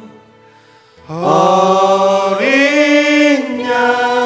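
A man and a woman singing a worship song in long held notes. The singing comes in about a second in after a brief lull, and the pitch steps up partway through before settling back down.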